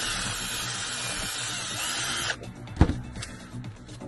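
A cordless drill runs while drilling a hole through a piece of cardboard, cutting off a little over two seconds in. About a second later there is one sharp knock.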